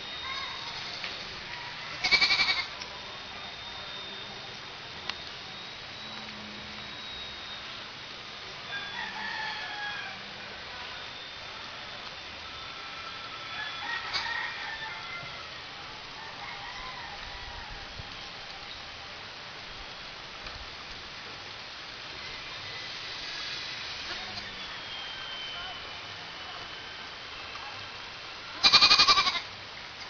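Faint, thin whine of a distant electric RC airplane's motor and propeller over steady outdoor hiss. Two short loud bursts break in, about two seconds in and near the end, with fainter pitched sounds in between.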